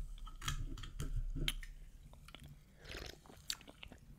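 Quiet mouth sounds of a person sipping and swallowing a carbonated orange soft drink from an opened can, with small clicks.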